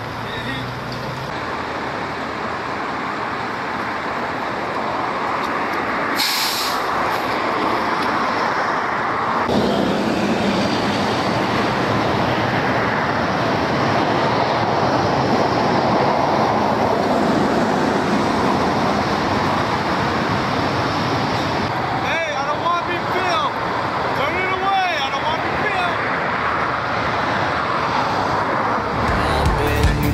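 Emergency vehicles running at a roadside scene, with traffic noise and indistinct voices, growing louder over the first ten seconds. There is a brief sharp hiss about six seconds in, and voices become clearer near the end.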